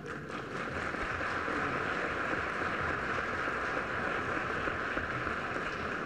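Audience applauding, swelling in the first second and then holding steady.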